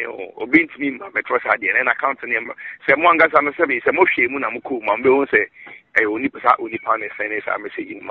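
A man speaking continuously, with short pauses between phrases.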